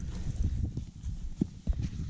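Close rustling and scuffing from a climber moving on rock, with several sharp knocks of boots and gear against the rock in the second half.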